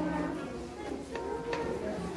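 A woman singing a song without accompaniment, holding her notes longer than in speech, with a couple of light taps about halfway through.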